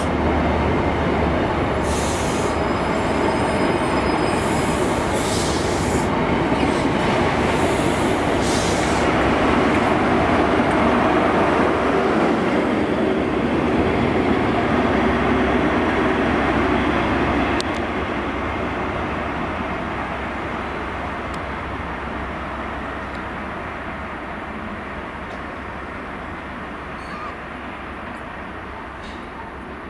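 A GWR High Speed Train, Class 43 diesel power cars with Mk3 coaches, running past with a steady rolling noise of wheels on rail and a few brief high-pitched squeals in the first half. The sound is loudest as the rear power car goes by, then fades away steadily over the last ten seconds as the train draws off.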